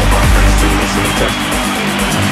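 Electronic dance music from a live DJ set over a loud sound system: a deep bass line under a steady, even hi-hat beat, the bass swelling in at the start.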